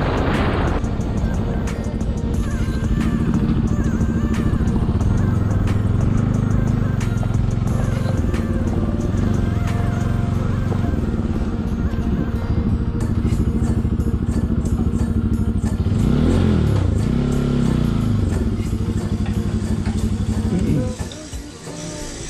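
Bajaj Pulsar NS200 single-cylinder engine running steadily under way. About 16 s in, its pitch swings up and down as the throttle changes. The engine goes quieter shortly before the end as the bike pulls up.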